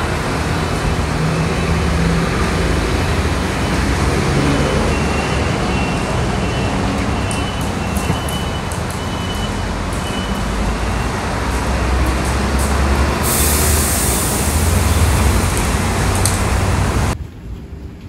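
Loud city street traffic: vehicle engines running and passing, with a strong low rumble. A brighter hiss rises for about four seconds near the end, then the sound cuts abruptly to a much quieter background.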